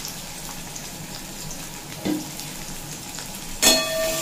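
Sliced onions sizzling steadily in hot mustard oil in a metal kadai. Near the end a metal spatula strikes and scrapes the pan with a ringing clang as stirring begins.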